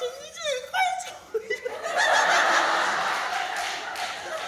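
A short high-pitched vocal from a performer, then a theatre audience laughing, the laughter swelling about two seconds in and holding steady.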